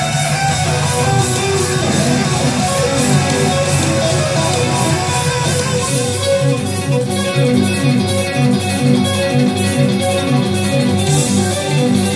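Electric guitar played live through stage amplifiers. Sustained low chords give way, about six seconds in, to a quick repeating figure of short, low, picked notes.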